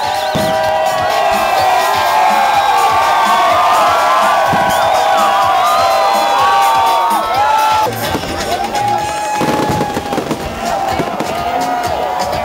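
A crowd cheering and shouting, with fireworks going off and music underneath; the bangs come thickest about eight to nine seconds in.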